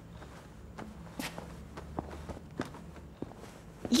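Soft, irregular footsteps and the rustle of a coat and scarf being taken off, a handful of light knocks over a faint low hum.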